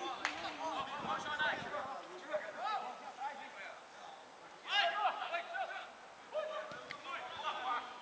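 Players' voices shouting and calling out across an outdoor football pitch, quieter than the nearby commentary, with a loud burst of shouting about five seconds in. A couple of short sharp knocks, like a football being kicked, come near the start and near the end.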